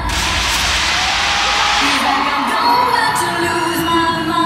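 Live pop concert music in an arena, with the audience cheering and screaming. The bass beat drops out and a loud rush of high noise fades over the first two seconds while the music carries on.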